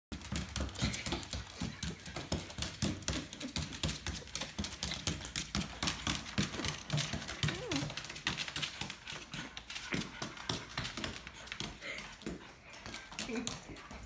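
A small dog's claws clicking and scrabbling on a hardwood floor in a fast, uneven patter as it humps a pillow. A person laughs near the end.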